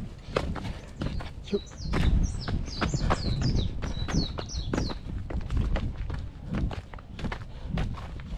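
A hiker's running footsteps down a trail: quick, irregular footfalls over a heavy low rumble. A bird calls in a run of short, high, falling chirps from about a second and a half in to about five seconds in.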